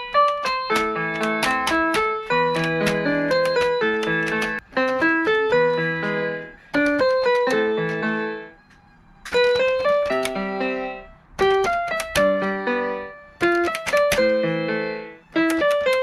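Piano music from a backing track, not from the keyboard in the picture: a melody over chords, played in short phrases with brief breaks. The longest break comes about eight and a half seconds in.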